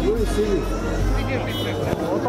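People talking nearby, with a low steady rumble underneath that drops away about a second and a half in.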